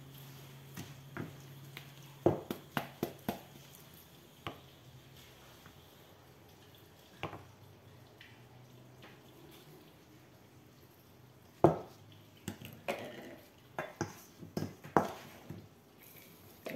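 Light clicks and taps of a spatula and small bottle as ground salt is spooned into the bottle's neck, in a cluster a couple of seconds in and another near the end, with a quiet stretch between.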